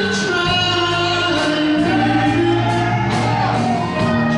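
Live band playing, with a lead singer singing over acoustic guitar, electric guitar, bass and drums.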